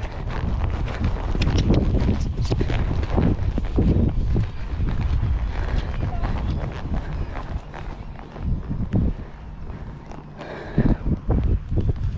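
Hoofbeats of a ridden horse moving over a sand arena surface, heard from the saddle as a steady run of dull thuds.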